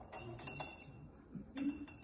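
A metal spoon clinking against a small glass bowl, a few light chinks with a brief ringing tone, as spoonfuls of red wine vinegar are measured in. A duller, louder knock comes a little past halfway.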